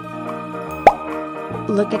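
A single loud plop about a second in, with a quick upward pitch sweep, as the plastic surprise egg is opened, over steady electronic organ music. A voice starts speaking near the end.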